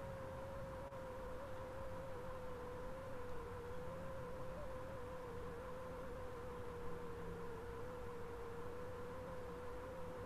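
A faint, steady tone that wavers slightly in pitch, over a low hum and hiss.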